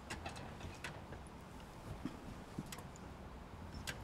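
Faint, scattered light clicks and taps with soft rustling as several people pull off coats and layers of clothing.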